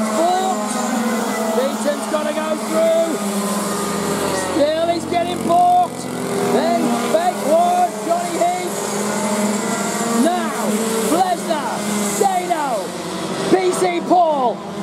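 Several racing kart engines, mostly two-strokes, revving up and down as the karts brake and accelerate through the corners and pass by. Their overlapping pitches rise and fall again and again.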